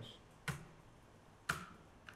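Two single key presses on a computer keyboard, about a second apart, the keystrokes that run a command in a terminal.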